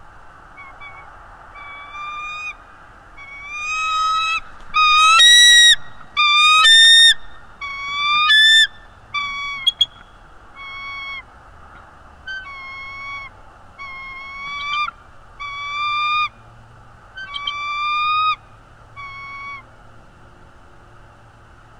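Bald eagle calling: a long series of drawn-out, slightly rising piping notes, one after another, the loudest near the middle.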